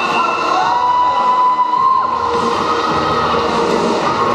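Roller derby crowd noise in a sports hall, with one long held call that swoops up at its start and drops away about two seconds in.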